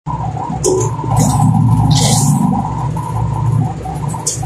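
A machine running with a steady low hum. Short hissing bursts come through about half a second, one second and two seconds in.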